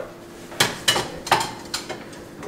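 Kitchenware clinking: four short, sharp knocks in quick succession, like plates or cutlery being handled.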